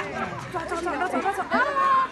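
Young children chattering and calling out, several high voices overlapping; near the end one voice rises into a short held call.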